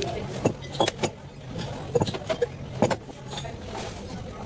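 Scattered clinks and knocks of a bottle and glassware being handled at a bar counter, over a steady low background hum.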